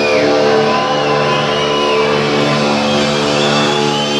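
Metal band's distorted electric guitars and bass holding one sustained chord that rings on without drums, as a song winds down, with high wavering tones above it.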